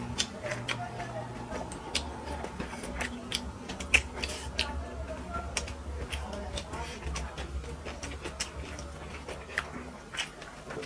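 Close-up eating sounds of two people eating chicken pilaf with their hands: irregular wet mouth smacks and chewing clicks, several a second, over a low steady hum.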